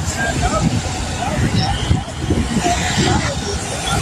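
Street ambience: road traffic and indistinct voices, under a heavy, uneven low rumble on the microphone.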